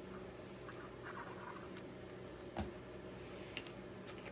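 Faint rustling and scraping of cardstock being handled and pressed down, with one sharp tap about two and a half seconds in, over a steady low hum.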